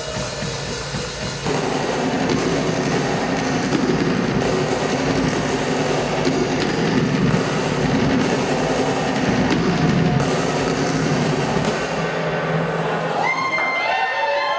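Rock drum kit played live, with rolls across the drums and cymbals and a heavy bass drum, getting louder and busier about a second and a half in. Near the end, sliding pitched tones come in over the drums.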